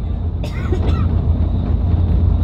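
Steady low road and engine rumble heard inside a moving bus at highway speed.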